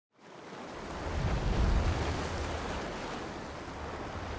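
Ocean water ambience: a steady rushing wash over a deep low rumble, fading in at the very start and swelling about a second and a half in.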